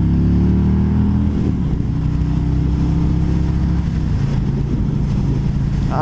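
Harley-Davidson Road King Special's Milwaukee-Eight 114 V-twin pulling hard under throttle at highway speed. The engine note climbs for about a second and a half, dips briefly, then runs on steadily.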